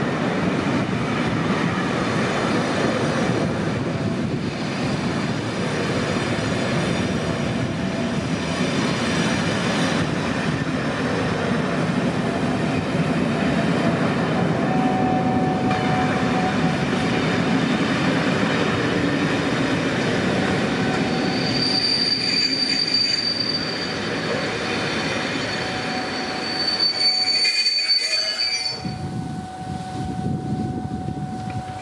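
Pullman coaches of a diesel-hauled charter train rolling along the track with a heavy rumble, joined in the second half by high-pitched squeals from the wheels as the train comes into the station.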